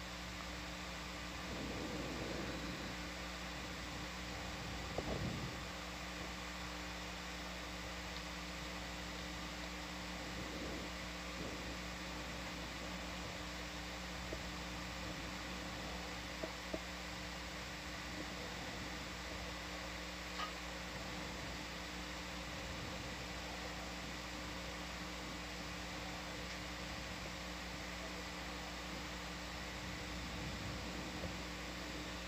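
Steady hum and hiss with a few faint steady tones, broken only by a couple of faint brief sounds about two and five seconds in.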